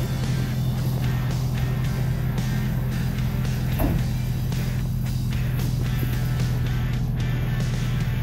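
Suzuki Samurai engine idling steadily, under background music.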